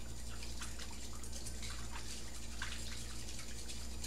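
Wire whisk beating a thick, lumpy egg-yolk and anchovy-paste dressing in a bowl: irregular wet clicks and taps of the wires against the bowl, over a steady low hum.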